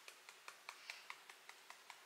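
Fingertips tapping lightly and steadily on the side of the other hand, about five faint taps a second: EFT tapping on the side-of-hand point.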